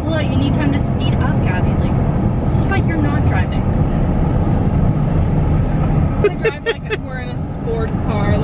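Steady rumble of a moving car's road and engine noise, heard from inside the cabin, with faint snatches of voices.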